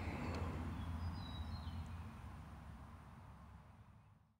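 Faint outdoor ambience: a steady low rumble with a few faint bird chirps about a second and a half in, fading out to silence near the end.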